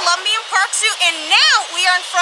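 A woman speaking: continuous talk with lively rising and falling intonation.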